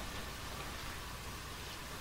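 Steady low hiss with no speech: room tone and the background noise of an old videotape recording.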